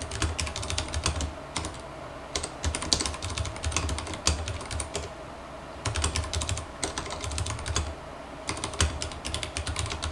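Typing on a Vortex Race 3 mechanical keyboard: quick runs of keystroke clicks in bursts, with short pauses between them.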